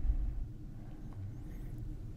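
Quiet room tone between sentences: a faint, steady low hum with no distinct sounds.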